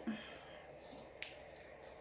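Faint rubbing of a sanding block with 150-grit sandpaper on a decoupaged drawer edge, with one sharp click a little over a second in.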